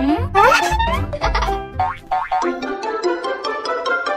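Upbeat children's background music with plucked notes, with a springy cartoon sound effect that glides upward in pitch in the first second.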